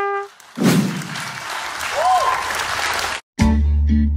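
A short brass-like tone, then a burst of crowd cheering and applause with a rising-and-falling call about two seconds in, cut off suddenly. Music with a steady beat starts just after.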